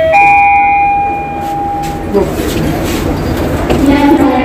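Lift arrival chime: a short two-note ding, the second, higher note ringing and fading over about two seconds, signalling that the lift has reached its floor. After it comes a low rumbling hubbub of a busy railway station.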